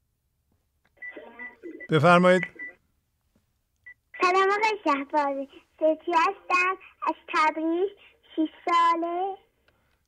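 Speech: a caller's high-pitched voice over the phone line in short, drawn-out phrases that rise and fall in pitch, from about four seconds in. A lower voice speaks briefly about two seconds in.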